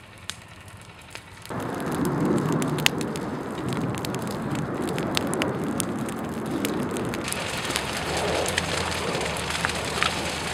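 Brush fire of dead branches and leaf litter crackling and popping. About a second and a half in, a much louder steady rush of burning comes in, with sharp pops scattered throughout.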